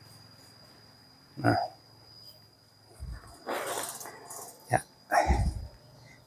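Rustling and a dull bump from the phone and clip-on microphone being handled and repositioned, with a click near the end. A faint steady high-pitched tone runs underneath.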